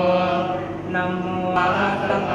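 A group of Thai Theravada Buddhist monks chanting Pali verses in unison, in a low, steady monotone with long held notes.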